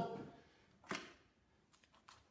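Quiet room with one short, sharp click about a second in.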